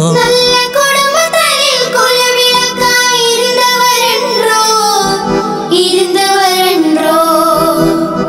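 Girls and children singing a Tamil Muslim devotional song with keyboard accompaniment, in long ornamented melodic phrases over held keyboard notes.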